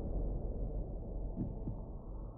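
Low, rumbling drone of a logo sound effect, slowly fading, with two soft low pulses in the second half.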